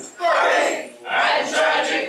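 Many voices singing together unaccompanied, in two loud phrases with a short break about a second in.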